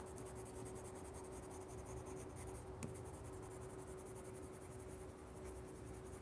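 A colored pencil shading on paper: a faint, steady scratching as the lead is worked over the page. A steady low hum runs underneath, and there is a single light click about halfway through.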